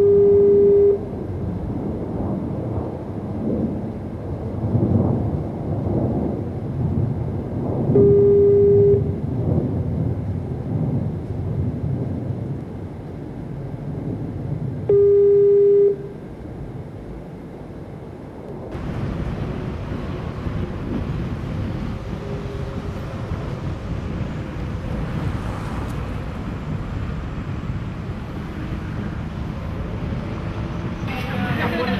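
A steady electronic beep tone, about a second long, sounds three times over a continuous rumbling noise. The noise turns brighter and hissier about two-thirds of the way through.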